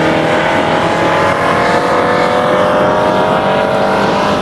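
BMW 335i's turbocharged 3.0-litre inline-six engine accelerating hard down a straight, its pitch climbing slowly and steadily.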